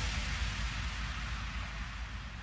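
Audience applauding, a steady even hiss of clapping that eases off slightly.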